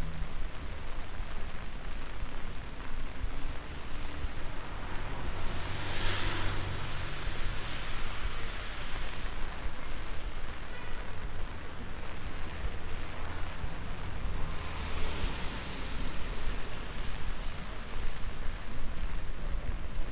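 Street traffic on wet road: a steady hiss with a low rumble, and two cars passing with tyres hissing on the wet asphalt, the first about six seconds in and the second about fifteen seconds in.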